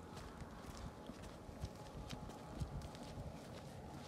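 Soft footsteps of people walking on hexagonal concrete paving tiles, a light tap about two to three times a second over a faint outdoor hush.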